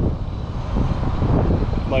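Steady low outdoor rumble with no distinct events, the kind of background noise of an open parking lot.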